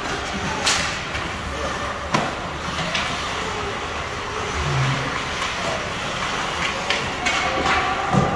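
Ice hockey play in a rink: sharp knocks of sticks and puck, several spread across the few seconds, over steady arena noise and spectators talking.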